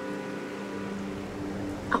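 Soft film-score music: a sustained chord of steady, held tones with no beat.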